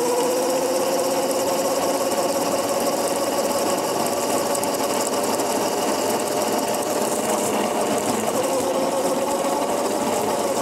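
Electric motor of a Razor go-kart whining while driving, its pitch climbing slightly over the first few seconds and dipping briefly near the end, over a rough rumble of the small wheels rolling on asphalt.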